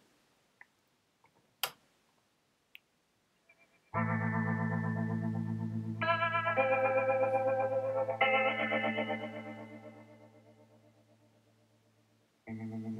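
A single click, then a couple of seconds later a music track comes in abruptly from a cheap USB MP3 decoder module just powered up: sustained, wavering chords that change twice and then fade away. The module is starting at maximum volume from the start of the track, its default on power-up.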